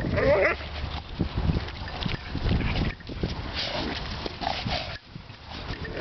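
Dogs at play: a short dog vocalization right at the start and a couple more brief ones about four and a half seconds in, over irregular scuffling of paws on dirt.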